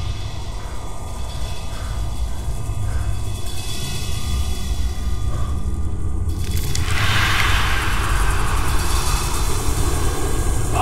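Horror film soundtrack drone: a steady low rumble building in loudness, then a sudden hissing, crash-like swell about six and a half seconds in that carries on.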